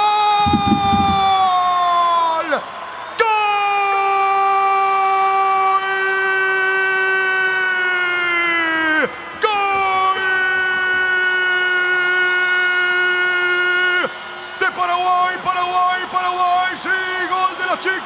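A football commentator's long drawn-out goal cry, the voice held on one high note for several seconds at a time: three long calls with short breaths between, each dropping in pitch as it ends, then excited shouting near the end.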